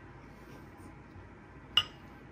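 A single sharp clink against a glass dip bowl near the end, as a pickle is dipped into the ranch, over faint steady room hiss.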